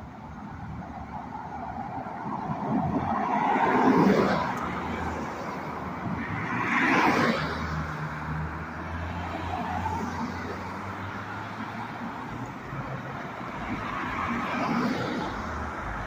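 Road traffic: cars passing by one after another on a street. The two loudest passes come about four and seven seconds in, and fainter ones follow later.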